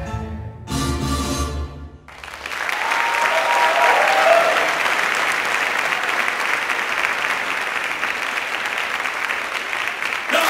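Salsa music stops about two seconds in, and an audience applauds steadily for the rest of the time.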